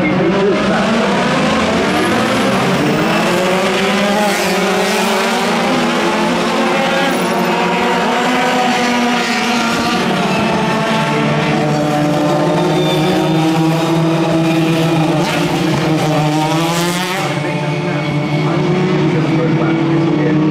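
Open-wheel race car engines revving at high speed, their pitch rising and falling again and again as cars accelerate, shift and pass, with a sharp fall in pitch about 17 seconds in.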